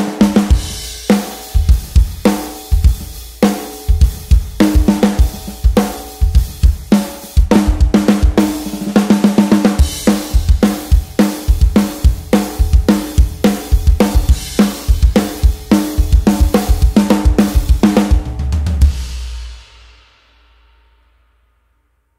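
Drum kit played in a heavy rock groove, the snare struck with full-stick rimshots (stick tip in the centre of the head, middle of the stick on the rim) for a loud, punchy crack with strong attack, under bass drum and cymbals. The playing stops about 19 s in and the last hits ring out.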